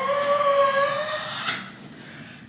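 A woman's voice holding one long, high note that rises slightly and fades out about a second and a half in, followed by a short breathy sound and a quieter stretch.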